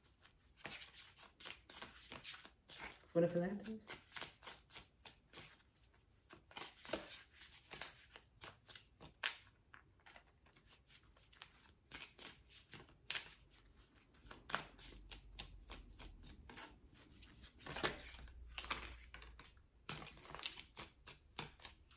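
Cosmic Insights oracle cards being shuffled by hand: a steady run of quick papery slaps and slides as the cards are cut and pushed through the deck. A short vocal sound cuts in about three seconds in.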